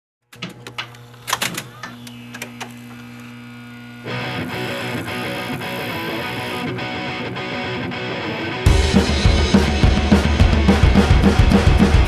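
Live punk rock band starting a song: a few scattered hits over a low sustained tone, a louder, denser layer coming in about four seconds in, then the full band with drums crashing in just before nine seconds and staying loud.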